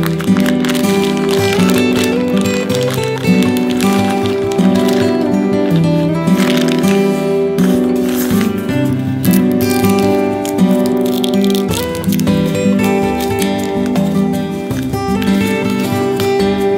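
Background music, with sustained notes and chords changing about every second.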